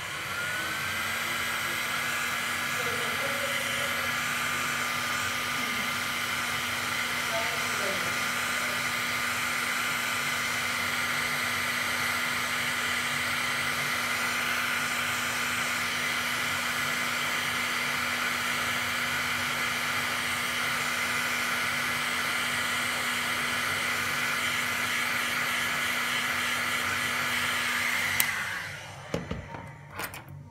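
Heat gun running steadily, blowing hot air to shrink heat-shrink tubing over wires, with a steady hum under the rush of air. Its whine rises as it spins up at the start, and it is switched off about two seconds before the end.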